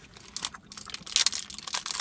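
Protein bar's plastic wrapper crinkling as it is peeled back, a run of crackles that grows denser and louder in the second second.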